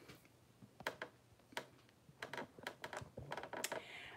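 Faint, scattered light taps and clicks: a couple of single ones, then a quicker run of them through the second half.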